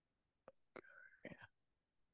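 Near silence, broken by a faint click and then a very faint whisper-like voice for under a second, about a second in.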